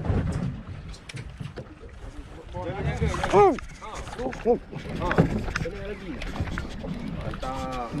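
Voices on a boat calling out, with one drawn-out rising-and-falling call about three seconds in and a few shorter calls, over steady wind and sea-water noise.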